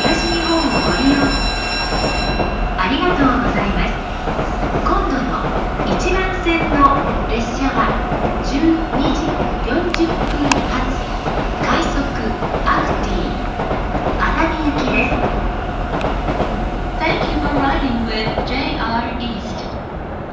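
JR E231 series electric commuter train pulling out of the station: a continuous running rumble with repeated clicks as the wheels cross the rail joints. A high, steady electronic tone sounds for the first two seconds.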